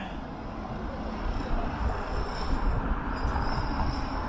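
City street traffic: a steady rumble of cars driving through a downtown intersection.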